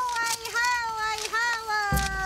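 A high-pitched voice singing unaccompanied, in long held notes that slide slowly downward with brief dips and breaks between them.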